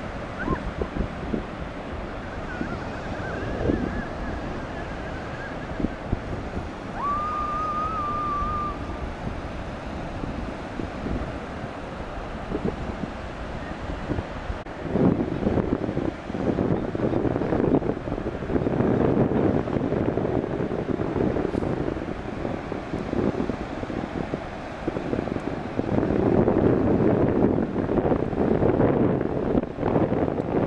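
Sea wind buffeting the microphone in gusts, over the wash of North Sea surf; the gusts grow heavier about halfway through. Two short faint wavering tones come in the first ten seconds.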